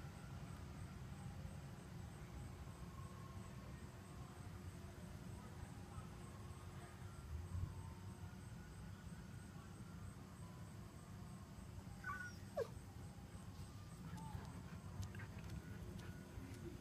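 Faint outdoor background with a steady low rumble. About twelve seconds in, the Siberian husky gives a single short whine that falls in pitch.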